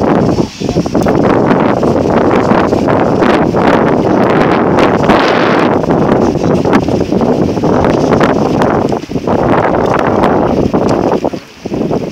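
Wind buffeting the camera microphone, a loud, rough rumble that dips briefly about nine seconds in and again near the end.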